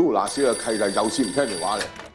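A black desk telephone's bell ringing for about a second and a half, with a man's voice speaking over it.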